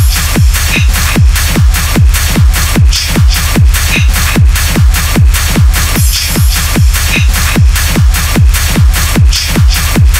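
Hardtechno track at 150 BPM: a heavy kick drum on every beat, about two and a half a second, each kick dropping in pitch, under a bright noisy top layer.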